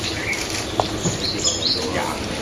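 A few brief, high-pitched bird chirps, one about a third of a second in and a short cluster about a second and a half in, over a steady background hiss, with one sharp click just before the one-second mark.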